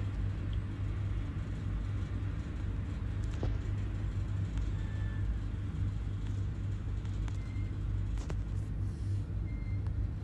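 Steady low rumble with a few faint clicks.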